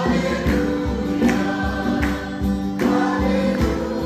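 Mixed choir singing a Hindi Christian worship song with a live band of keyboard, guitar and drums. The voices and keyboard hold long notes over a steady drum beat.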